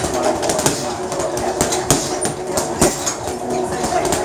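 Punches from 20-ounce Ringside boxing gloves landing on a hanging heavy bag: several sharp thuds at an irregular pace, the strongest near the middle, over a steady background drone.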